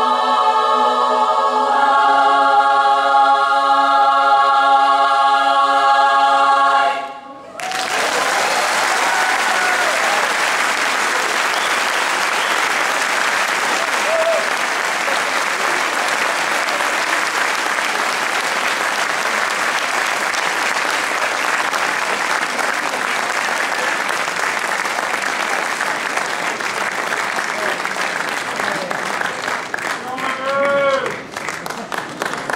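Women's barbershop chorus singing a cappella, ending the song on a long held chord that cuts off about seven seconds in. Audience applause follows at once and carries on steadily.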